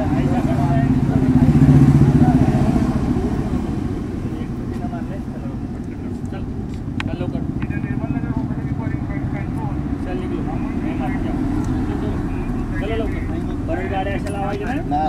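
City road traffic: a vehicle passes close by, its engine hum swelling to a peak about two seconds in and then fading into a steady wash of passing traffic. Voices murmur in the background.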